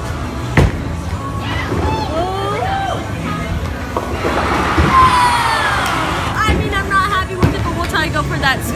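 A bowling ball lands on the lane with a sharp thud about half a second after release. About four seconds in comes a louder swelling burst of noise with voices, over background music and chatter in a bowling alley.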